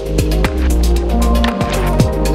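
Background electronic music with a steady beat, deep bass and bass-drum hits that drop in pitch.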